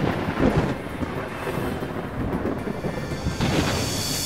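Thunder sound effect for an animated lightning strike: a loud crash and rumble with rain-like hiss, over music, with a second crash shortly before the end.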